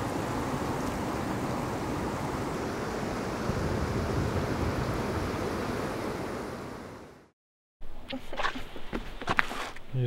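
River rapids rushing, a steady noise of fast water that fades out about seven seconds in. After a moment of silence come a few short knocks and rustles.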